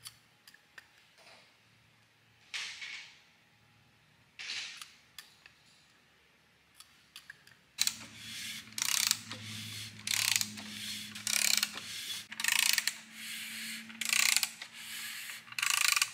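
Hand ratchet on the crankshaft snout turning an assembled LS3 short block over, clicking in repeated strokes about a second apart from about eight seconds in. Before that, only a few faint taps and scrapes.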